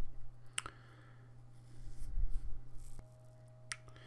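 Two short computer-mouse clicks, one about half a second in and a fainter one near the end, over a low steady hum on the recording.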